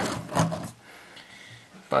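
A man's voice briefly, then about a second of quiet room tone before he speaks again.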